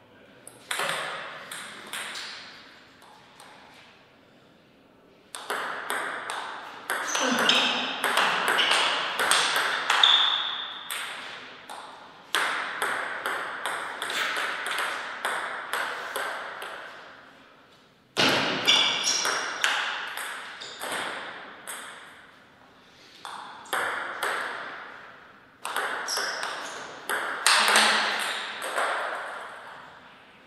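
Table tennis rallies: the plastic ball clicking sharply on the table and off the paddles in quick exchanges, in several rallies with short lulls between points.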